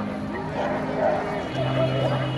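A dog barking in short yips over background chatter and music.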